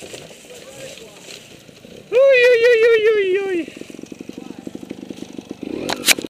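A loud wordless yell, held for over a second with a wavering, slowly falling pitch, as a trials rider crashes. It is followed by a rapid low pulsing and a sharp loud burst at the very end.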